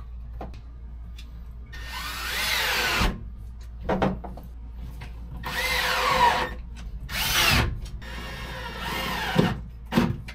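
Power drill run in four bursts, its motor pitch rising and falling as it speeds up and slows under load, with a few sharp knocks between the bursts.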